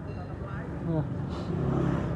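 A man speaking softly over steady background street traffic noise.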